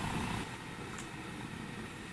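Quiet room tone: a steady low hum and hiss, with a faint click about a second in.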